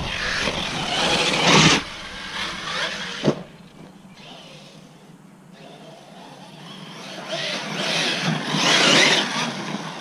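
Arrma Talion 6S brushless RC truggy driving across muddy ground: surges of motor and tyre noise, loud for the first two seconds, then a sharp knock and a quieter stretch, building up loud again near the end as it comes back.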